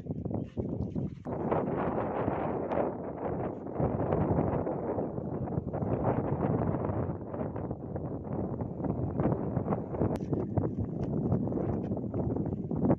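Wind buffeting the microphone in an uneven, rough rumble, with footsteps on grass and rustling.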